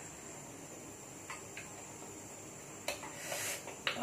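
Mouth sounds of someone tasting food off a spoon: a few small clicks and lip smacks, with a short slurp near the end, over faint room hiss.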